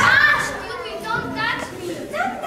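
Children's voices speaking, high-pitched, with the phrases running on through the whole stretch.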